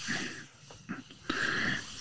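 A man's soft breathy laughter: two short exhaled puffs, the second a little over a second in.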